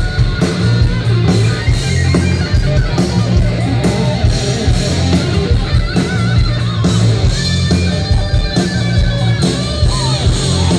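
Hard rock band playing loud and live: distorted electric guitar over a drum kit and heavy bass.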